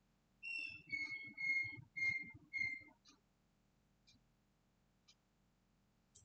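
Five short whistled notes in quick succession, the first a little higher than the other four, then a few faint single clicks about a second apart.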